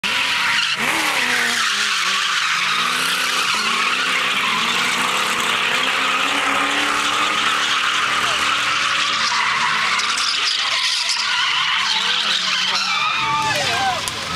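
Drift cars sliding sideways, their tyres squealing without a break while the engines rev up and down over and over; one is a BMW E30 with a 4.4-litre V8 swap.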